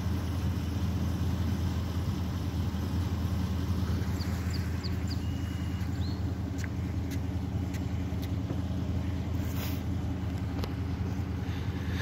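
A steady low rumble throughout, with a few faint, short high chirps about four to six seconds in.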